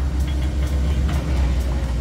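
Steady low outdoor rumble with a faint hum, and no distinct events.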